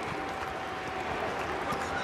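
Basketball arena ambience: a steady low background of a sparse crowd and court noise, with a faint steady tone running through most of it.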